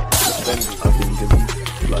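A glass-shattering sound effect just after the start, over a music track with a beat about twice a second and deep bass.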